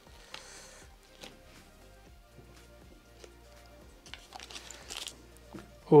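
Quiet background music, with faint crinkling and small scraping ticks as a piece of fresh yeast is scraped from its wrapper.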